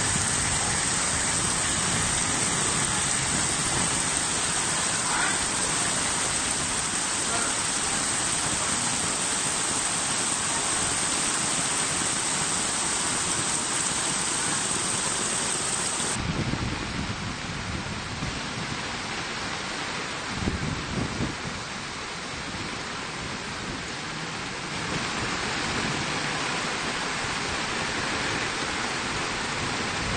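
Heavy tropical downpour with floodwater running through a street, a dense steady hiss. About halfway it changes to the lower rush of muddy floodwater flowing, with a few low thumps, and near the end the rain and pouring water grow louder again.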